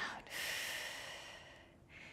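A woman's long audible exhale, the breath hissing out and fading away over about a second and a half.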